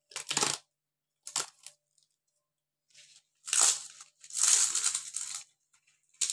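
Banana leaf rustling and crackling in four short bursts as hands fold it into a wrapped parcel, the longest and loudest in the second half.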